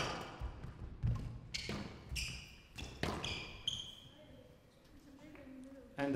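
Squash rally: the hard rubber ball knocks sharply off rackets and walls several times over the first few seconds, mixed with short high squeaks of court shoes on the wooden floor, then the play dies away.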